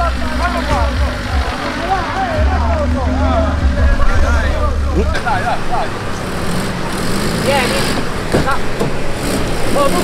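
Fiat Panda 4x4 engine running at low revs on a muddy, rutted off-road track. The strong low engine sound stops abruptly about five seconds in, leaving a fainter engine from a second Panda working up the trail.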